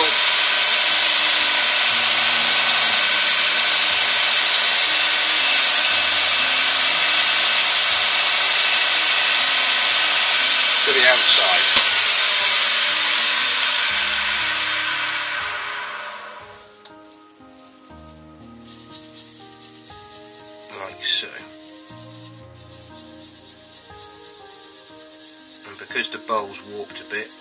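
Cloth towel rubbing against a spinning wooden bowl on a wood lathe as spirit stain is wiped onto it: a loud, steady hiss that fades away after about fifteen seconds. Soft background music remains after it.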